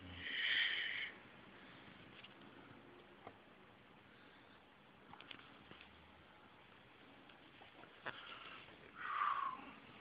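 Quiet room with a person breathing close to the microphone: a sniff in the first second and another breathy sound near the end, with a few faint clicks from the phone being handled in between.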